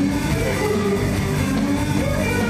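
Live rock band playing, with electric guitars and drum kit.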